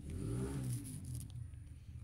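A motor vehicle engine revving in the background, its pitch swelling and falling in slow sweeps over a steady low hum. A few faint crisp crackles come near the middle, from the chocolate-coated biscuit being bitten or its wrapper being handled.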